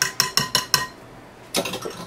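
A utensil tapping rapidly against a stainless steel mixer bowl, about five ringing metallic clinks a second. The tapping stops a little under a second in, and a brief softer clatter follows near the end.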